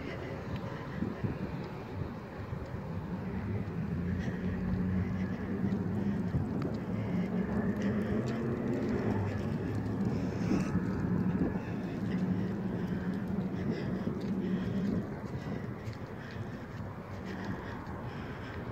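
A low, steady engine hum that grows louder about three seconds in, holds for several seconds, then drops away about fifteen seconds in.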